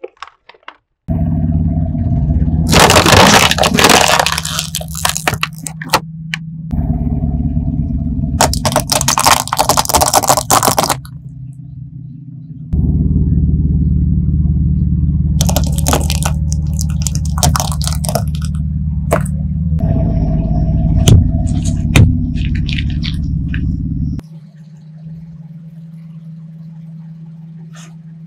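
A car's engine running slowly at low revs while its tyre rolls over and crushes brittle objects, giving several bursts of dense crunching and cracking, with two sharp cracks near the end. The sound starts and stops abruptly several times between short takes.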